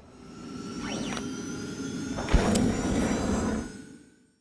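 Outro logo sound effect: a whoosh that swells up over about a second, with a sweeping glide, then a sharp hit about two seconds in over sustained ringing tones, fading out near the end.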